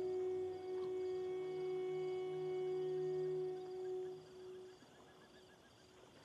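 Film score: one long, steady sustained note with soft overtones that fades out about four and a half seconds in. Faint, quick high chirps are left under it near the end.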